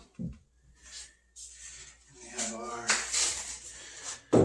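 Feeder and waterer trays being set down inside a plywood brooder box: a short knock just after the start, a softer one about a second in, and some rustling. A man speaks briefly in the second half.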